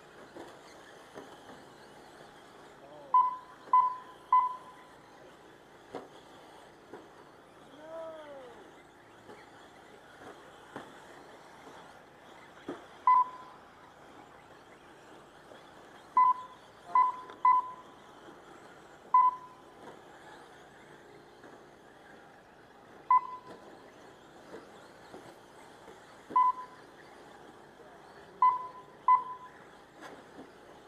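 Short electronic beeps from a race lap-counting system, one each time an RC short-course truck crosses the start/finish line, coming about a dozen times at irregular spacing, singly or in quick runs of two or three as cars cross close together. Underneath is a faint steady background of the trucks running on the dirt track.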